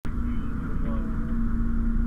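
Fire engine running, heard from inside its cab: a low rumble with a steady hum.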